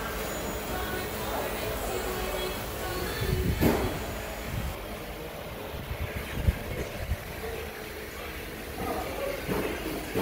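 Workshop background noise: indistinct voices and general shop clatter, with a sharp knock a little over three and a half seconds in and a short thump about six and a half seconds in.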